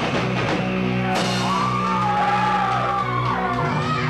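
Live rock band playing loud: held chords over a pulsing low end, with a wavering high melodic line across the middle, and the music shifts just before the end.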